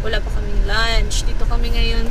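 A woman's voice in short sounds without clear words, over a steady low rumble inside a car cabin.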